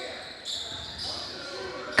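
Basketball being dribbled on a gym's hardwood court, heard faintly in the hall. Short high-pitched squeaks come about half a second in and again about a second in.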